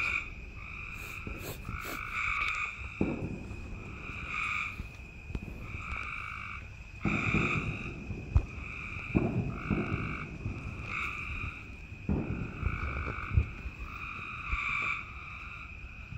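Cope's gray treefrog calling: a series of short, harsh trills repeated about once a second. Low rustling and knocks from leaves being handled come in at a few points.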